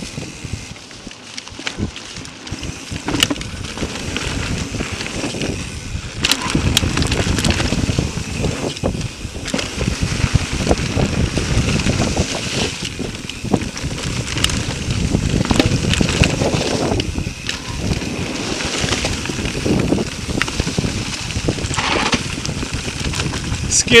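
Mountain bike riding fast down a dirt trail covered in dry leaves: tyres rolling over dirt and leaves as a steady rushing rumble that gets louder a few seconds in, with scattered sharp clicks and rattles from the bike over bumps.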